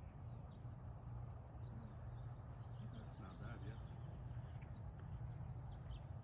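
Birds chirping in short, scattered high calls over a steady low rumble of outdoor background noise.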